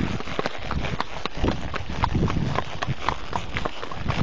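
Hoofbeats of a ridden Hanoverian-cross-trotter horse: a run of sharp, unevenly spaced clicks and thuds over a steady noisy background.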